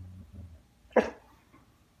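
A dog's low growl trails off, then the dog gives a single short, sharp bark about a second in, a warning bark at a plastic bag.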